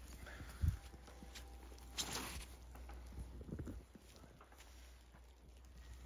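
Faint footsteps on a leaf-strewn forest trail, with a single low thump less than a second in and a brief rustle about two seconds in.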